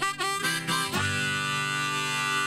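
Harmonica playing a blues phrase with a few bent notes in the first second, then holding a long chord.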